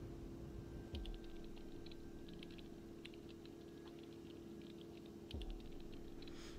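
Rapid, irregular typing clicks, like keys being struck, over a steady low hum, with a soft thump about a second in and another near the end.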